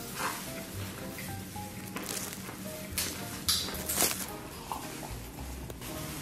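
Chewing and wet mouth smacks from someone eating soft, sticky stewed beef trotter, with light background music.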